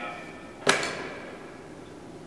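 A rubber bicycle inner tube slapping down once, a single sharp smack with a brief ring after it.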